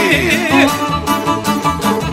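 Bosnian izvorna folk song: a sung line ends with a falling vocal glide about half a second in, then violin and strummed šargija carry on over a steady beat.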